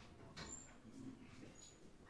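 Near silence: faint room tone with a soft click about half a second in and a couple of brief, faint high squeaks.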